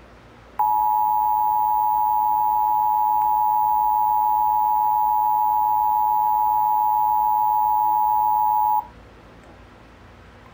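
Emergency Alert System attention signal played from a television: the steady two-tone alert (853 and 960 Hz together) starts about half a second in, holds for about eight seconds and cuts off suddenly, announcing a required monthly test.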